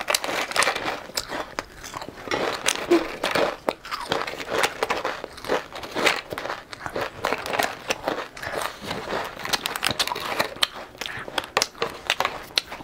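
Close-miked crunching and chewing of a crisp snack, with the sharp clicks and crinkles of a thin clear plastic tray being handled. The clicks come irregularly and thickly throughout.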